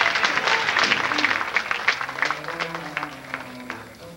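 Audience applauding, loudest at the start and thinning out toward the end, with recorded string music continuing underneath.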